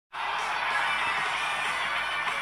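Music from demo footage playing through smartphone speakers, thin-sounding with little bass, at a steady level.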